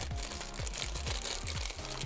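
Background music with a steady, repeating bass pattern, over the crinkling of a plastic blind-bag wrapper being torn and pulled open by hand.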